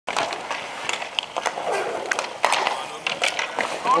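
Inline skate wheels rolling and scraping on an asphalt rink, with repeated sharp clacks of hockey sticks during play.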